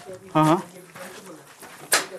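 A short, low hooting call about half a second in, followed by a sharp click near the end.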